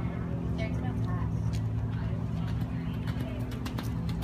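A steady low hum under faint distant voices. From about a second and a half in come a run of short clicks and soft thuds: the hoofbeats of a horse cantering on arena sand.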